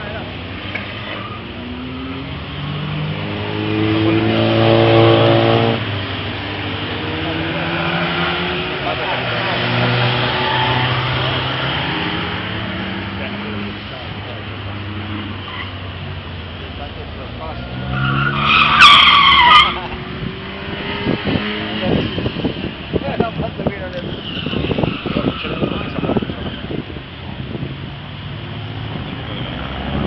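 Car engines revving up and down as cars lap a circuit, loudest as one accelerates hard about five seconds in. About two-thirds of the way through, a car's tyres squeal for about a second and a half, the loudest sound.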